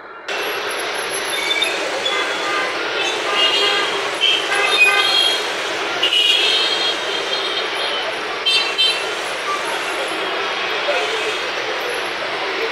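Busy street traffic, motorcycles and cars running, with short horn toots scattered through and people's voices in the background. It starts abruptly just after the beginning.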